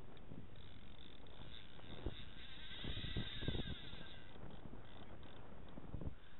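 Wind buffeting the camera's microphone, a steady rumble with uneven low thumps, strongest around the middle. A fainter higher sound swells and fades near the middle.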